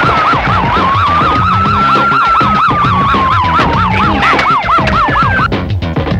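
Police siren: a fast warbling yelp, about three to four wavers a second, sounding together with a slower wail that rises and then falls, over background music. The siren stops shortly before the end.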